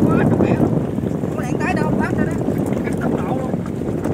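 Fishing boat's engine running with a steady low drone, with scattered short light slaps on top and faint voices.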